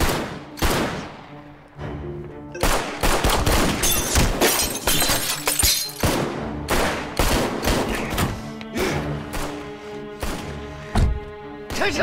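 Semi-automatic pistol shots, many in quick, irregular succession, over a dramatic film music score.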